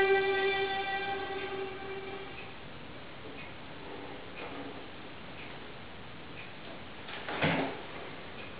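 The last note of a slow air on a 2007 Robert Knudsen violin dies away over the first two seconds, leaving quiet room tone. A brief soft noise comes about seven and a half seconds in.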